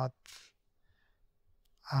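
A man's short breath between phrases, a quick hiss about a quarter second in, followed by near silence until speech resumes near the end.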